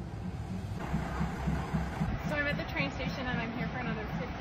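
Diesel train engine rumbling low with a regular pulse as the train approaches, with voices speaking over it from about two seconds in.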